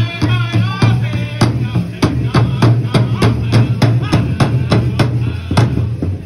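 Pow wow drum group beating a large powwow drum in a steady beat for a side-step song, with voices singing in about the first second. The drumbeats end shortly before the end as the song closes.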